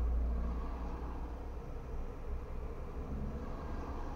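Steady low rumble of a car idling while stopped in traffic, heard from inside the cabin.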